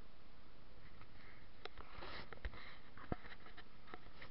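Faint steady background noise broken by a few soft, sharp clicks, about one and a half, two and a half and three seconds in.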